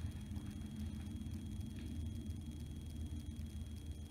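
Quiet room with a steady low hum and a few faint rustles of a paper neck strip being fitted around the neck.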